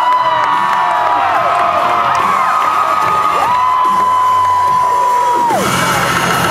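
Audience cheering and whooping over the dance music, with a long high note held twice, the second for about two seconds. The music's bass thins out during this stretch.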